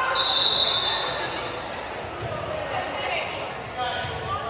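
Volleyball referee's whistle: one short, steady blast about a quarter of a second in, signalling the serve, over voices echoing in the gym.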